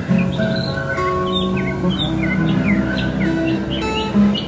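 Acoustic guitar being picked, a run of held single notes and chords, with birds chirping throughout in the background.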